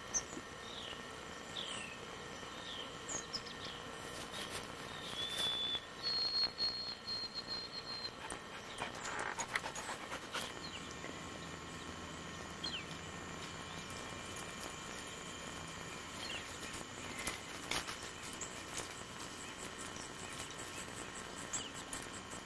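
Outdoor riverside ambience: a bird gives a run of short falling chirps, about one a second, for the first few seconds, then a long high whistled note. Under it runs a steady high drone, with occasional soft knocks and rustles.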